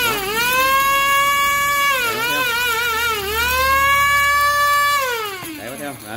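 Electric dry grinder's high-speed motor and blades running on rice, a loud high-pitched whine; the pitch sags and wavers about two seconds in, then climbs back, and falls away as the motor spins down near the end.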